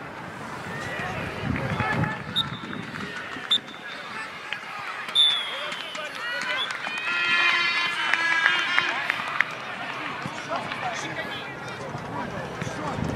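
Football players shouting and calling to each other across an outdoor pitch, loudest about halfway through, with a few sharp knocks among the voices.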